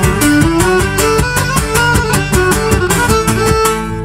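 Live Cretan folk band playing an instrumental passage between sung verses: a bowed Cretan lyra over strummed laouto and mandolin, with a steady percussion beat.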